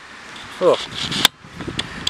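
A man's brief "oh", followed about a second in by a single sharp click.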